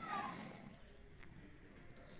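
A faint single falling animal call in the first half second, then low room noise.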